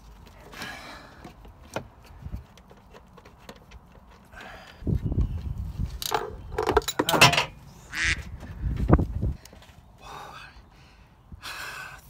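Hands working a car's wiper motor and linkage into place under the bonnet: scattered clicks and knocks of parts being handled, then, about halfway through, a louder stretch of thumps, scraping and rustling close to the microphone.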